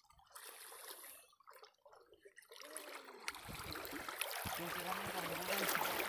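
Shallow seawater sloshing and trickling around wading legs, faint at first and growing louder through the second half.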